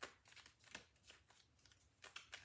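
Faint sound of a tarot deck being shuffled: a few soft card strokes, one at the start and another under a second in.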